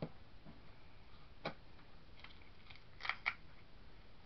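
Hands handling craft materials on a desk: a soft knock at the start, then a few small sharp clicks, the loudest two close together about three seconds in.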